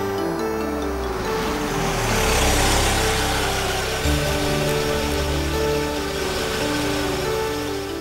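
Background film music with a repeating pattern of held notes. Over it a vehicle drives up, its road noise swelling during the first three seconds and then easing off.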